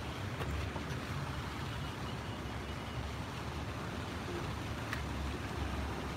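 Steady city street traffic noise, a low rumble of cars on the road, with a couple of faint clicks.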